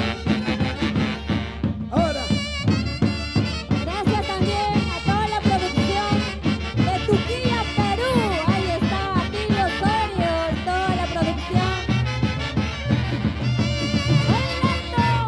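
Peruvian orquesta típica playing a santiago live: a saxophone section carries the melody over a steady, driving beat, with harp in the ensemble.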